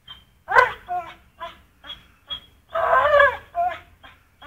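Pitbull whining while it hangs from a springpole rope gripped in its jaws: a string of short high whines and yelps, with a longer wavering whine about three seconds in.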